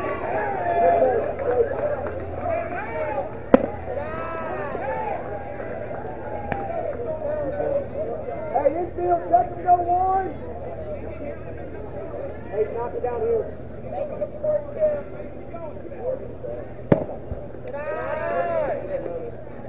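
Voices of ballplayers and spectators calling and chattering across a youth baseball field. Two sharp smacks stand out, one about three and a half seconds in and a louder one near the end.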